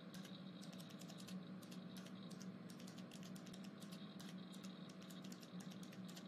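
Computer keyboard typing: a fast, irregular run of faint key clicks over a low steady hum.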